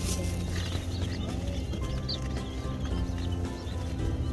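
Baby chicks and button quail chicks peeping in short, scattered high chirps over background music.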